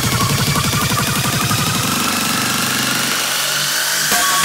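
Hard dance music: a fast roll of distorted kick drums, each a short falling pitch sweep, thinning out about halfway and leaving a held droning synth note as the track builds.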